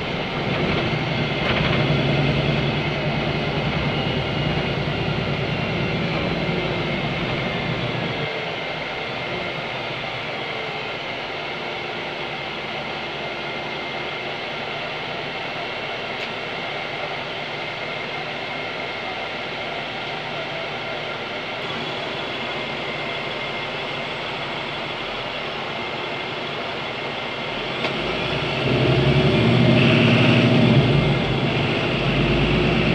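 Cabin sound of a city bus running, from its Cummins ISB6.7 diesel engine with Voith automatic gearbox: a steady rumble, louder for the first several seconds, then settling to a lower, even level about eight seconds in, and rising again near the end.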